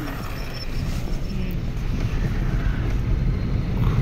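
Low road and engine rumble heard from inside a moving vehicle, growing slowly louder.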